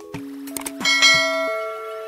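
A couple of quick clicks, then a single bright bell ding that rings out and fades: the notification-bell sound effect of an animated subscribe button, over soft background music.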